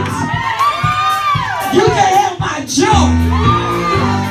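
Live gospel worship music: voices singing and calling out over a microphone, with the congregation whooping and shouting over a steady beat. Low sustained bass notes come in about three seconds in.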